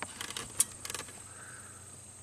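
A quick run of small clicks and rattles in the first second, the sharpest a little past halfway through it: hands handling wiring connectors and meter test leads under a truck's dash. After that only a faint steady hum remains.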